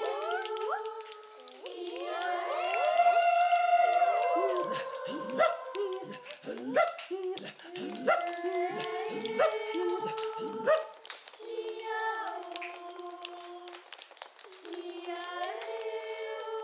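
A children's choir sings a contemporary piece with vocal effects: held notes and sliding pitches, loudest a few seconds in. This gives way to a stretch of short, choppy, rhythmic vocal sounds with sharp accents, then held notes again near the end.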